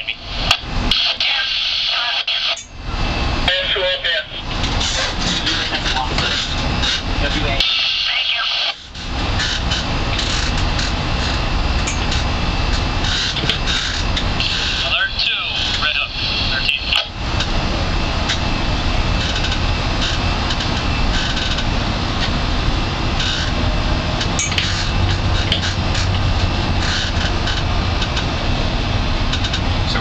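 Steady wind and engine noise on the deck of a moving boat, dropping briefly twice in the first nine seconds.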